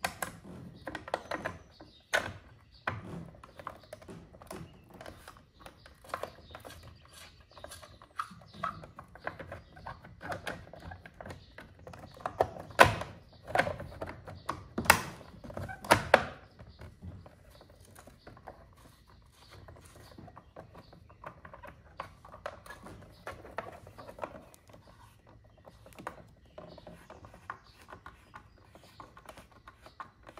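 Scattered clicks and knocks of a screwdriver and a plastic side cover being worked onto a MotorGuide trolling motor's plastic head housing, with a few louder knocks a little after the middle.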